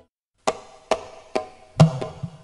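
A dangdut backing track restarts after half a second of silence: four sharp, evenly spaced percussion strikes, about two a second, the last one joined by a low bass note as the band comes in.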